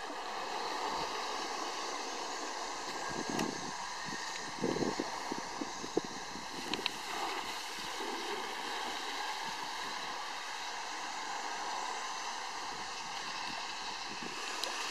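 Steady outdoor wash of wind and water noise, with a few soft bumps about four to seven seconds in.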